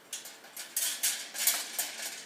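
A quick series of light metallic clinks and rattles from the black wire shelving of a metal plant stand being handled as a plant pot is moved on it.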